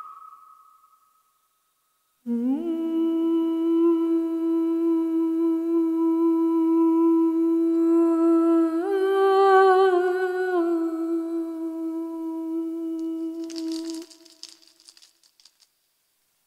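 A woman's voice holds one long hummed note that slides up into place, steps briefly up to a higher pitch in the middle and back down, then stops. Before it, the ringing of a Koshi chime fades out. Near the end comes a short burst of dry rattle shakes.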